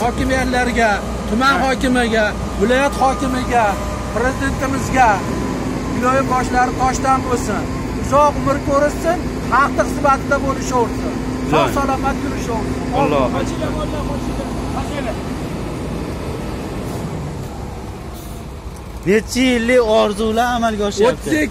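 A man talking over the steady engine drone of a Volvo ABG6870 asphalt paver working nearby; the drone dies away in the last few seconds.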